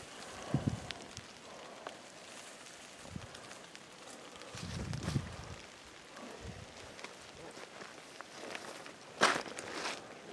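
Faint footsteps and rustling through brush and dry grass, with scattered soft thuds and one sharper knock near the end.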